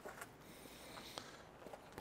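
Near silence: faint outdoor background hiss with a few soft, faint clicks.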